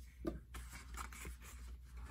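Faint rustling and scraping of paper and cardboard as items are handled and taken out of a small box.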